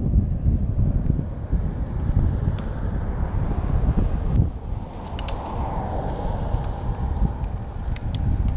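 Wind buffeting the microphone of a camera on a moving bicycle, a steady rumble, with motor traffic on the highway alongside. A vehicle swells past about five seconds in.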